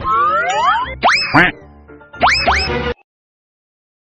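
Edited-in cartoon sound effects: a slide-whistle-like rising glide, then quick springy upward 'boing' sweeps. They stop abruptly about three seconds in.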